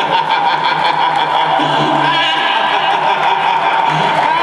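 Live band's amplified sound holding a sustained note at the close of a song, with light rhythmic percussion ticking during the first second.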